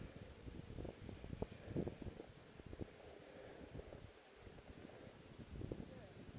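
Faint, irregular low buffeting and rustling on a body-worn camera's microphone while skiing slowly down a piste, with the loudest knocks a little under two seconds in.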